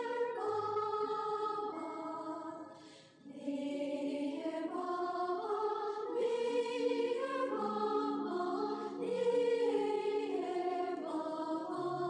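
Choral music: several voices singing long, slowly changing notes, with a brief dip about three seconds in.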